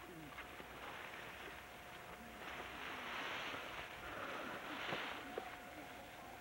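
Tall dry grass rustling and swishing as bicycles are pushed through it, swelling louder twice in the middle, over a faint steady tone.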